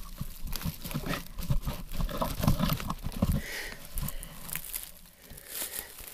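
Irregular rustling, crinkling and crackling of a waterproof poncho being handled and shifted over dry oak leaves.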